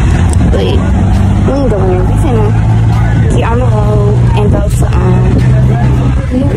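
Music with a singing voice gliding through long held notes over a sustained low bass, at an even loudness.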